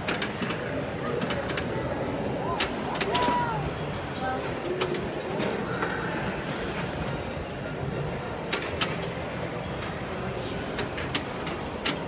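A Wheel of Fortune pinball machine in play: frequent sharp clicks and knocks of the flippers and the ball hitting targets, with a few short electronic tones. Under it is the steady chatter and din of a busy pinball hall.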